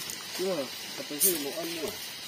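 A voice talking in short phrases over a steady high hiss, with a brief crisp crackle a little past the middle.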